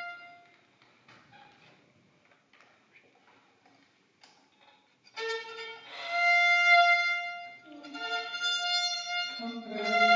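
Two violins playing a folk tune together, starting about five seconds in after a near-quiet pause, with long, sustained bowed notes.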